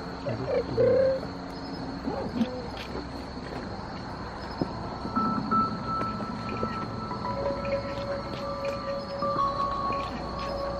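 Slow ambient music with long held tones coming in about halfway, over a steady high-pitched insect chorus, with a few short scattered sounds in the first couple of seconds.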